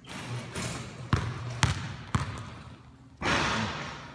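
Basketball dribbled three times on the gym floor, the bounces about half a second apart. A louder, short burst of rushing noise follows about three seconds in.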